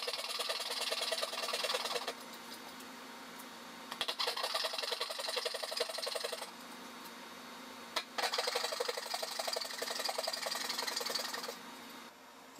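Dovetail saw cutting into a pine board by hand: three runs of quick back-and-forth rasping strokes, each a few seconds long, with short pauses between.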